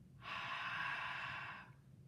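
A person breathing out one long breath, lasting about a second and a half, onto a stained flower to change its colour back.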